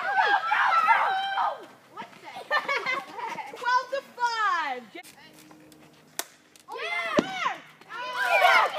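Boys shouting and cheering in a wiffle ball game, long high yells that rise and fall. There is a quieter lull just past the middle. A single sharp knock comes about seven seconds in, followed by more yelling.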